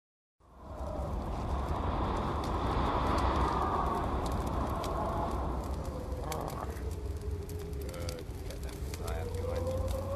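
Experimental tape-collage field recording. A steady hiss and low rumble carry scattered crackles and a slowly wavering tone that dips and rises again, and a man mutters faintly from about six seconds in.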